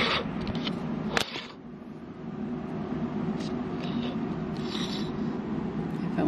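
Bendable pipe cleaner scratching over the nonstick grid plates of a waffle maker, digging out burnt-on potato crusts, in faint irregular scrapes. A sharp click about a second in.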